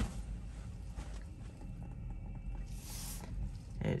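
Low, steady cabin rumble inside a Tesla electric car as it rolls to a stop, with a brief soft hiss about three seconds in.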